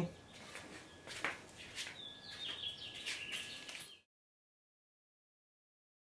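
Faint bird chirps in quick sweeping calls, after a couple of light knocks, over a thin steady tone; the sound cuts off to dead silence about four seconds in.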